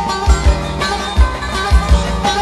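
Background music with a steady drum beat and a pitched melody.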